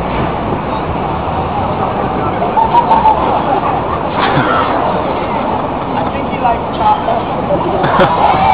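Indistinct voices of a gathered crowd over the steady traffic noise of a busy city street.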